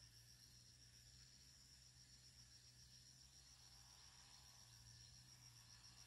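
Near silence, with a faint, steady, high-pitched insect trill.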